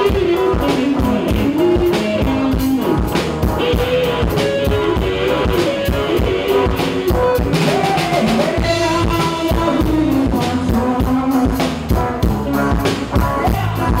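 A rock band jamming: a drum kit keeps a steady beat under a gliding lead melody, with guitar and bass.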